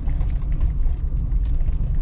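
Steady low rumble of a car driving, heard from inside the cabin: engine and tyre noise on a patched, uneven asphalt lane.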